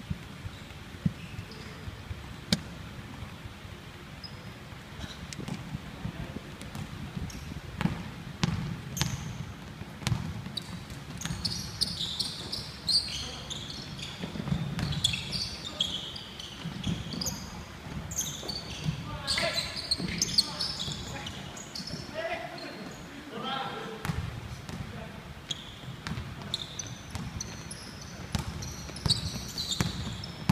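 A basketball bouncing and being dribbled on a wooden sports-hall floor, with sharp knocks throughout. Short high-pitched squeaks of players' shoes come in bursts, busiest in the middle and again near the end, in the echoing hall.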